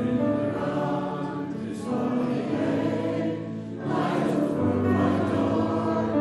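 A congregation singing a hymn together, accompanied by an electronic keyboard; the singing swells at the start and again about four seconds in.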